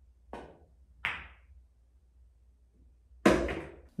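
A pool cue tip tapping the cue ball, then about a second later a sharper, louder click of the cue ball striking the nine ball. Near the end comes a louder thud.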